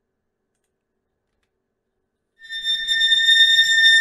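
A metal swipes transition sound effect from a sample library playing back. After about two and a half seconds of silence, a bright metallic ringing tone comes in and holds steady over a faint low rumble.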